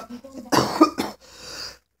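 A woman coughing: a couple of coughs about half a second in, followed by a softer breath.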